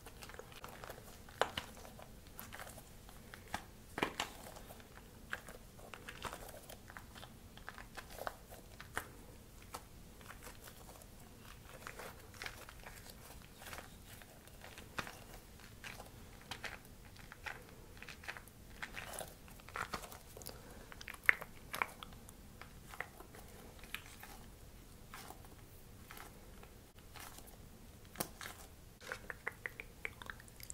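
Chewing and mouth sounds: short irregular clicks, a few every second.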